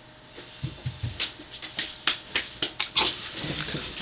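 A run of irregular clicks, taps and knocks with a few low thumps, from objects being handled and moved close to the microphone.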